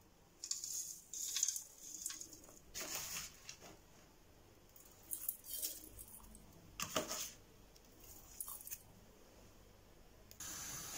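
Short, irregular clinks and scrapes of stainless steel pots being handled and set on a gas stove's grate, about seven light knocks spread through the stretch.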